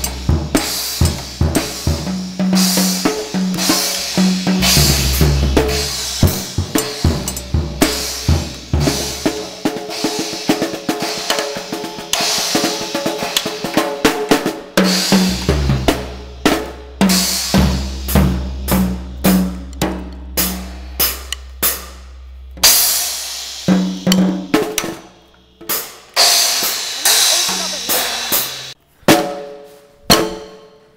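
Acoustic drum kit played with sticks: a long run of snare hits and fills mixed with cymbal crashes and bass drum. The strokes come thick and fast in the middle and are more spaced out near the end.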